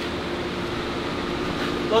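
A steady machine hum, a low drone of several even tones that holds without change.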